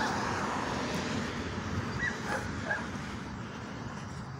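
Steady outdoor street noise, with a few faint, short, high calls about two seconds in.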